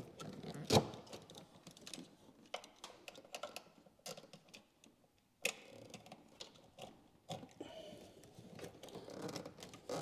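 Hands and a tool working a tight 20-year-old rubber heater hose off its fitting: irregular light clicks, taps and rubbing. A sharp knock comes about a second in and another about halfway through.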